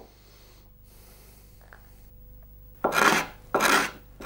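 Two short strokes of a hand tool scraping across wood near the end, smoothing the glued back of a wooden instrument body flush with its sides.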